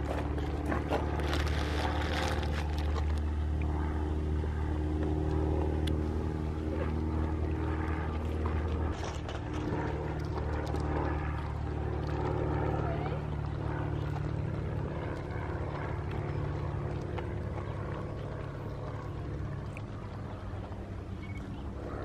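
A vehicle engine idling: a steady low hum that softens after about nine seconds.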